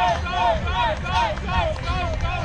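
A voice calling out in short, evenly spaced rising-and-falling syllables, about three a second, over low outdoor background noise.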